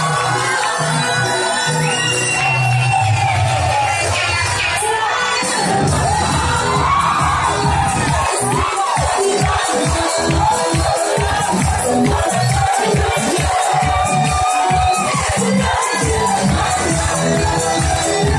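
Loud dance music with a cheering, shouting crowd. A heavier bass comes in about five seconds in and settles into a steady beat of about two pulses a second.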